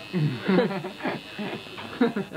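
Men's voices talking indistinctly in a small room.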